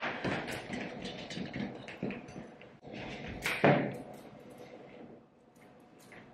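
Small clicks and rustles of strappy heeled sandals and a clutch bag being handled, with one sharper knock about three and a half seconds in; the handling grows quieter after it.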